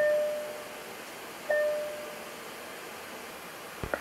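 Two single chime tones about a second and a half apart, each struck and fading out, over a steady background hiss: a Boeing 737-800's chime sounding.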